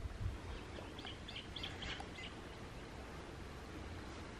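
A small bird chirping: a quick run of about six short, high chirps between one and two seconds in, over a steady low outdoor rumble.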